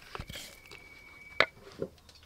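Soft, moist pats of shredded food dropped by hand onto a plate, with a few faint taps and a sharper click about one and a half seconds in.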